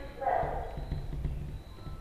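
Marker pen writing on a whiteboard: light scratchy strokes as a word is written.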